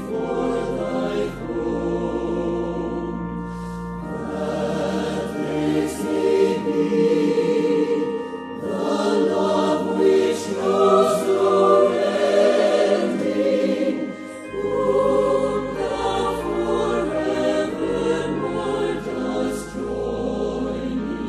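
Recorded Christian choral music: a choir singing with sustained accompaniment.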